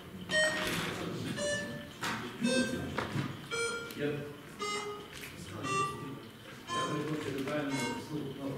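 A run of short electronic beeps at changing pitches, roughly one or two a second, over low murmuring voices.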